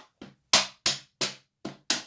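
Wooden draughts pieces clacking on a wooden board as a capturing combination is played out by hand: about six sharp, separate clacks, roughly three a second.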